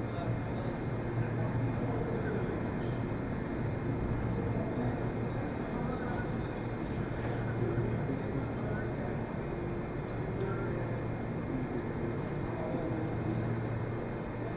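Steady low hum of a large indoor hall's ventilation, with faint indistinct voices of people talking at a distance.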